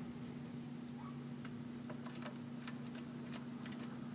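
A faint, steady low electrical hum with scattered light ticks as low-voltage wires are twisted together by hand in an AC condenser's control panel.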